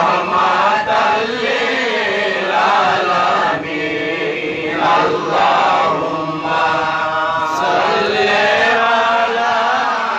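A group of men chanting Islamic devotional verses together into microphones, in a continuous melodic line with short breaks between phrases.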